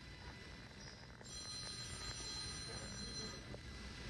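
Low steady background hum of an airport terminal, with a high, steady electronic tone that starts about a second in and stops about two seconds later.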